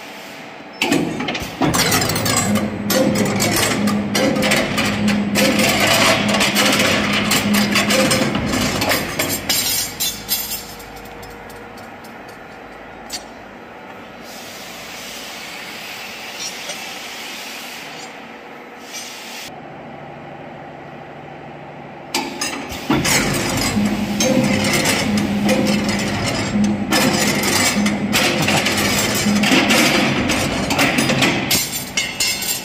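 Automatic rebar stirrup bending machine running: steel bar fed through the straightening rollers and bent by the rotating bending head, with a steady motor hum and rattling clatter. It runs loud in two spells, starting about a second in and again from about two-thirds of the way through, with a quieter stretch of about ten seconds between.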